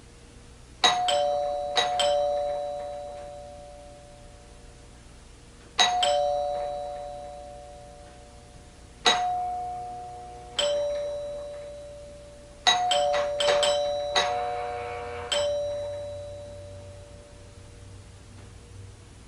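Doorbell chime rung over and over by a visitor at the door. Each ring is a falling two-note ding-dong that dies away slowly. The rings come a few seconds apart at first, then several quick presses pile up on each other near the end.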